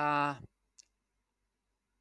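A voice finishes a short spoken Cantonese phrase about half a second in. A single faint click follows, then digital silence.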